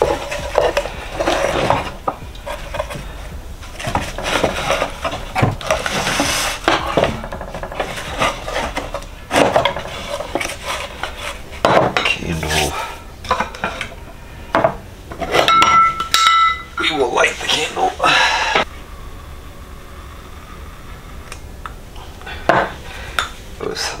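Handling noise of props being arranged on a wooden crate: irregular knocks and clatter of small hard objects set down on wood, with rope being moved about, and a brief squeak partway through.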